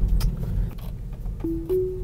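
Tesla Model 3 Autopilot engagement chime: two short rising notes about a second and a half in. Low road and tyre rumble runs underneath inside the cabin.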